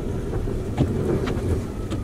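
Plow truck's engine running steadily, heard from inside the cab as the truck creeps forward pushing snow, with a few faint clicks.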